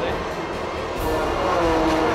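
A Fun Cup race car's engine passing by on the track, its pitch falling as it goes past, with music underneath.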